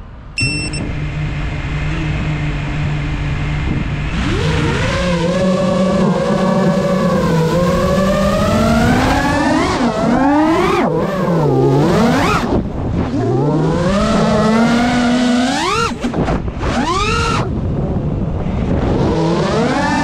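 FPV quadcopter's brushless motors and propellers. About half a second in there is a short high beep and the motors start spinning at a steady low hum. From about four seconds they whine, rising and falling in pitch with each throttle change as the drone takes off and flies fast, low runs with hard turns.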